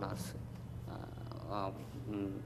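Steady low electrical hum in the studio audio, with brief bits of a man's speech at the start and about one and a half seconds in.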